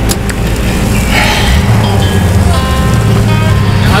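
A side-by-side utility vehicle driving along a dirt trail, its engine running steadily, under background music.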